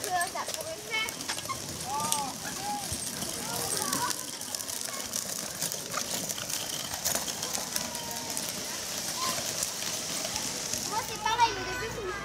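Children's voices and short calls at an outdoor play area, over a steady high hiss. Pedal tricycles and a pedal go-kart are rolling across sandy gravel.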